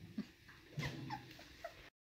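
A dog whimpering in several short, falling squeaks; the sound cuts off abruptly near the end.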